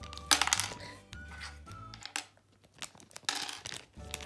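Foil polybag of Lego pieces crinkling as it is handled, twice, with small plastic bricks clattering out onto a table, over background music.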